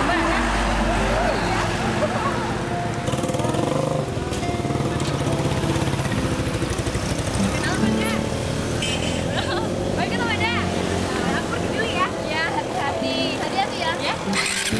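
A motorcycle engine running close by, with young women chattering and laughing over it and background music underneath.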